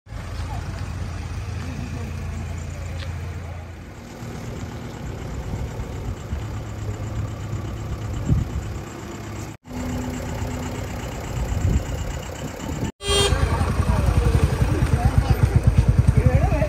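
Diesel engines of JCB 3DX backhoe loaders running, a steady low drone. After a cut about thirteen seconds in it comes louder, with an even pulse.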